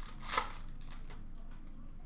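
Brief crinkle of a trading card pack wrapper being handled about a third of a second in, followed by faint handling noise.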